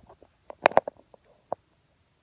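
A few short clicks and brief mouth noises from a woman pausing between sentences, loudest in a quick cluster just over half a second in, with one more click near the end.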